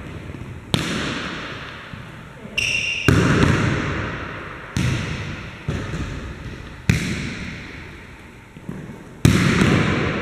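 Volleyballs being struck and bouncing on a hardwood gym floor: about six sharp smacks at uneven intervals, each ringing out with a long echo in the large hall. A brief high squeak comes about two and a half seconds in.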